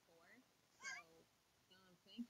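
Very faint voices over a video call, with a short, high, wavering cry about a second in.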